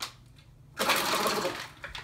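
A short burst of breathy, rapidly pulsing laughter, starting a little under a second in and fading before the end.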